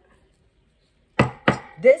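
Two sharp knocks about a third of a second apart, a deck of tarot cards being tapped against the table.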